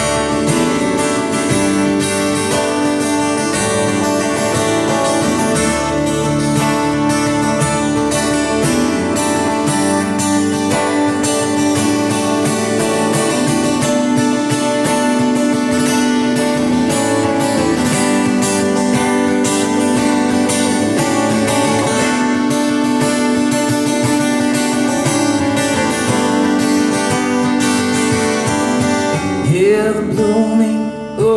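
Instrumental break of a folk/Americana song played live: an acoustic guitar strummed steadily under a lead line on a Telecaster-style electric guitar.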